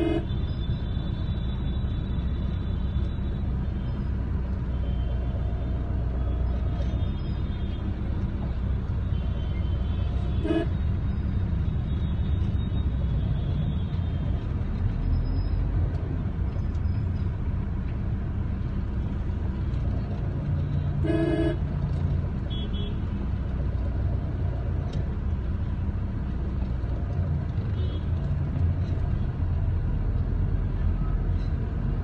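Steady low rumble of a vehicle driving in city traffic, with a short horn toot about ten seconds in and another around twenty-one seconds.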